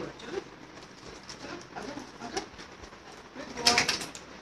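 A dog gives one short, loud call near the end, after scattered soft noises.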